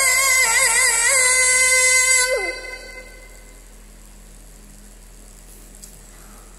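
A teenage boy's voice in melodic Quran recitation (tilawah), holding one long note with small wavering ornaments, then letting it fall away in a downward glide about two and a half seconds in. A pause follows, with only a low steady hum and room tone.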